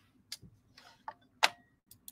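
A few faint, irregular clicks, about five in two seconds, the sharpest about one and a half seconds in.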